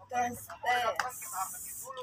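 Quiet voices, with a single click about a second in and then a short high hiss. The blender motor does not run: the new blender is dead.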